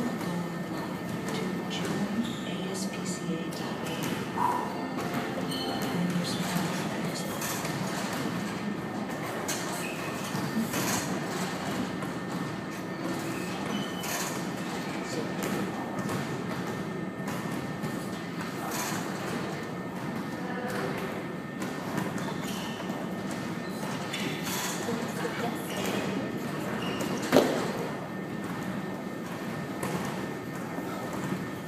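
Gym room ambience: unclear background voices with scattered knocks and thuds, and one loud thud a few seconds before the end.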